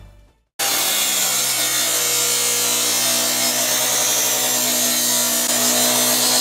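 A miter saw cutting through metal tubing: a loud, steady grinding of the blade on the metal over the saw motor's hum, starting suddenly about half a second in.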